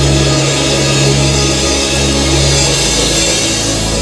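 Drum kit played over a loud rock-style backing track, with held bass notes that change pitch a few times.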